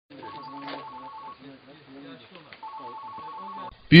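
A phone ringing with a fast-pulsed electronic trill, two rings of about a second each, the second about two and a half seconds after the first, over the low talk of several men's voices.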